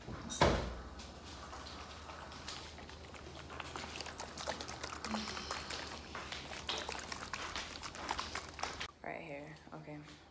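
Handling sounds close to the microphone: a sharp knock about half a second in, then irregular small clicks and rustles as a small bottle is turned over in the hands.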